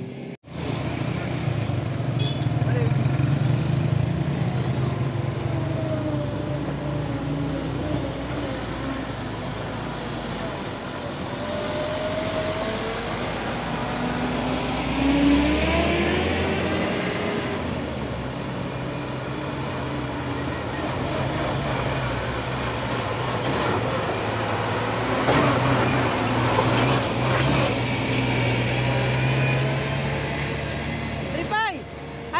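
Truck engines working hard up a steep, rough dirt climb, a steady low rumble with tyre and road noise, growing louder as the trucks come nearer, with people's voices alongside.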